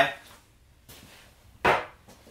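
A single sharp knock about one and a half seconds in, a metal sealer can set down on a wooden workbench, after a little faint handling noise.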